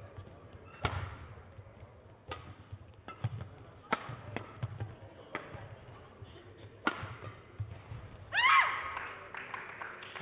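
Badminton rally: five sharp racket strikes on a shuttlecock, about one every one and a half seconds, with players' feet thudding on the court between them. Near the end the rally closes with a short, loud, pitched squeal that bends in pitch.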